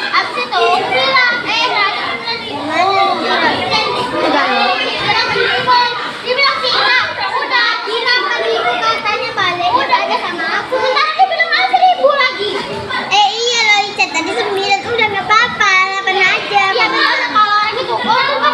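Many children's voices talking and shouting over one another at play, a continuous babble.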